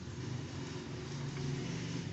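Ballpoint pen writing on paper, with a steady low motor-like hum in the background.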